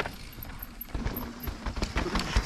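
Downhill mountain bikes riding past over a dry, dusty dirt trail: tyres crunching through loose dirt over a low rumble, with irregular rattling knocks from the bikes.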